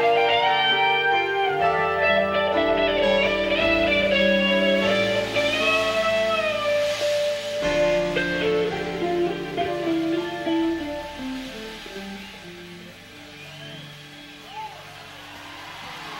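Live rock band with an electric guitar (a Fender Stratocaster) playing sustained, bending lead notes over keyboard and bass. The music dies away over the last few seconds as the song ends.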